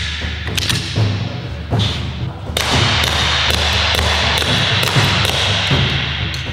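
A series of sharp shots, irregularly spaced, with rounds punching into a paper target, over background music.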